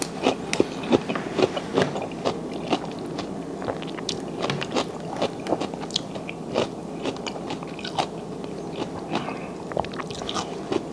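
Close-miked eating of king crab: chewing mixed with the small, irregular cracks, clicks and scrapes of cooked crab shell being picked apart by hand.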